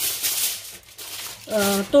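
A short rustle of handling at the start, then a woman's voice begins speaking about a second and a half in.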